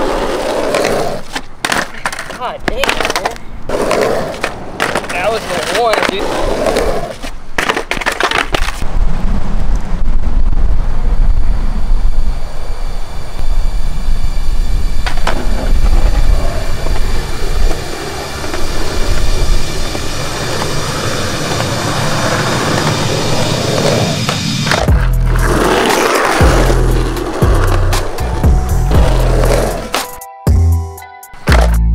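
Skateboard on concrete: urethane wheels rolling with a steady low rumble through the middle stretch, and sharp wooden clacks of the board popping, flipping and landing in the first few seconds and again near the end.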